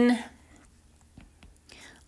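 Stylus writing on a tablet's glass screen: a few faint taps and clicks about a second in, against quiet room tone.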